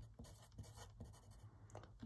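Faint scratching of a graphite pencil writing on paper.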